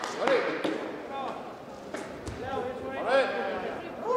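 Voices calling out in a large sports hall, with two louder shouts about a third of a second in and a second near three seconds in. A few sharp knocks or claps fall in between.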